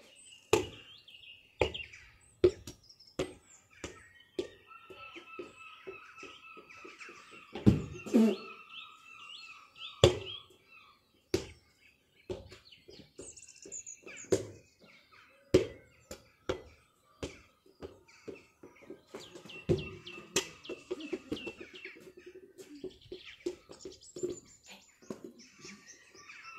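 A football being kicked and bouncing on a paved street: a string of sharp, irregular thuds, the loudest about eight and ten seconds in. Birds chirp in the background in stretches.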